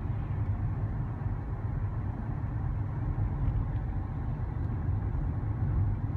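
Steady low rumble of a car driving, heard from inside the cabin, with tyre noise from the rain-wet road.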